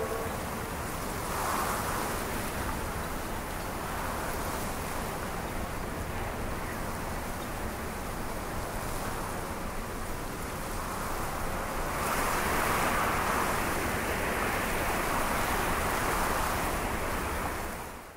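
A steady rushing ambience with no music, swelling a little about a second in and more strongly from about twelve seconds, then fading out at the end.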